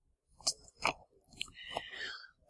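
A few faint, sharp mouth clicks close to a microphone, followed near the end by a soft intake of breath before speaking.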